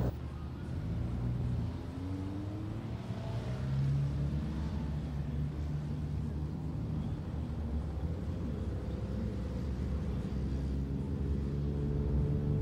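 Road traffic led by a semi-trailer truck's diesel engine pulling under load, its note rising about two to four seconds in and then holding steady over a low rumble.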